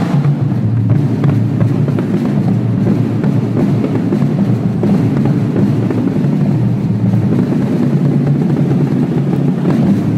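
Marching drumline playing a fast, steady low roll carried by the bass drums, with little cymbal or snare on top.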